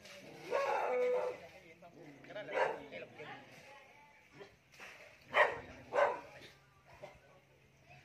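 A dog barking in short, sharp barks, the two loudest about half a second apart a little past the middle, with fainter ones earlier.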